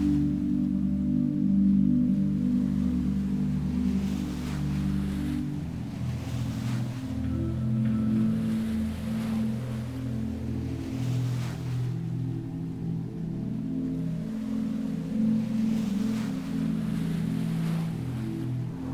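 Ambient music of sustained low drone chords that shift about five seconds in, with ocean waves washing in and out over them.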